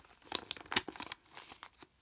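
Paper checklist leaflet from a LEGO minifigure blind bag being folded up by hand, crinkling in several short crackles.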